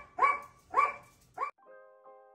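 A small dog barks three times, about half a second apart. Quieter piano music comes in near the end.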